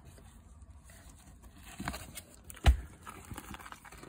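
Handling noise from bringing a vinyl LP out of its sleeve: faint rustling and light clicks, with one sharper knock a little under three seconds in.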